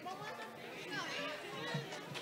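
Indistinct chatter: several voices talking quietly at once, with no clear words, in a large room.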